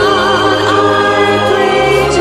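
Christmas choral music: a choir holding sustained chords, with a wavering high melody line coming in at the start.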